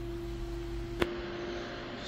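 Steady whirr of the mining server's cooling fans, with a constant hum on one pitch, and a single sharp click about a second in.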